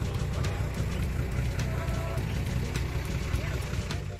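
Diesel engine of an Ashok Leyland tour bus idling at a stop, a steady low rumble.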